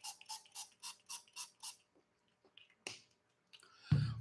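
Wristwatch reminder alarm beeping, about four short beeps a second, stopping a little under two seconds in. A faint click follows, and a throat-clear begins at the very end.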